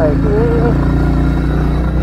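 Royal Enfield motorcycle's single-cylinder engine running steadily at cruising speed, heard from on the bike.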